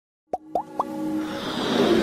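Animated logo intro sound effects: three quick rising pops in a row, then a whoosh that swells and builds.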